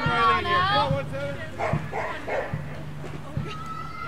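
High-pitched voices shouting and calling out, several at once and loudest in the first second, with a held call near the end. A steady low hum runs underneath.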